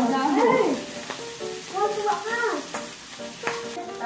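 Food frying and sizzling on a hot tabletop grill, with a few sharp clicks, under louder pitched voices that rise and fall.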